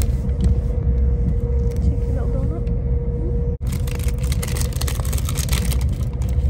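Steady low rumble with a constant hum, heard inside a moving train carriage, overlaid with the crackle of a paper bag being handled and opened. The sound briefly cuts out about three and a half seconds in.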